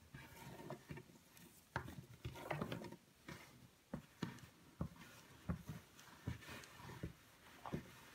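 Faint handling of a thick twisted rope on a table: the rope rubbing and scraping as it is wound into a coil, then a run of soft irregular taps as hands press the coil flat.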